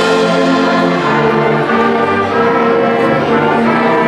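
Orchestral music with brass, playing held chords that change about once a second.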